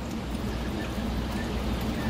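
Steady rush of running water with a low hum underneath, as from reef aquarium circulation and pump equipment.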